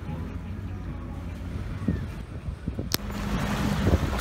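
A boat's engine running at low speed, a steady low rumble. About three seconds in there is a single sharp click, and after it the background is a steadier hum with wind on the microphone.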